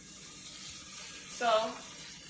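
Chicken pieces sizzling steadily in a skillet.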